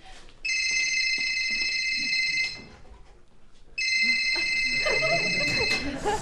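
Mobile phone ringing with an electronic ring tone, two rings of about two seconds each with a short pause between.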